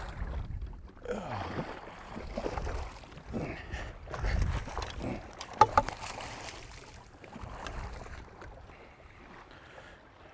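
A hooked largemouth bass splashing and thrashing at the surface beside a boat as it is played in and scooped into a landing net, with a few sharp knocks a little before the middle.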